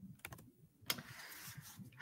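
A few faint clicks, the sharpest just under a second in, followed by a soft rustle.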